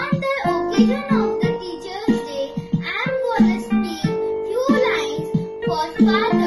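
Music: a child singing with instrumental accompaniment.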